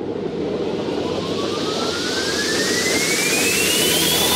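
Motorbike taxi ride noise, a steady low engine and road rumble with wind on the microphone. Over it, a whooshing hiss swells and brightens, and a single thin tone glides steadily upward: an edited-in riser effect building toward music.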